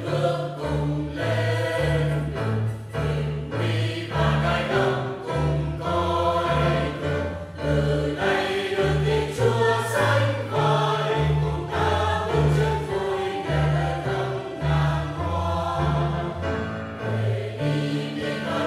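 Mixed choir of men and women singing a Vietnamese Catholic hymn in parts, over instrumental accompaniment with a bass line moving in steady notes.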